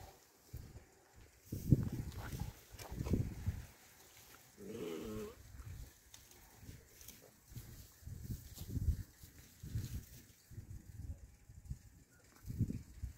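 Puppies play-fighting: one short, wavering growl about five seconds in, amid irregular low scuffling thumps.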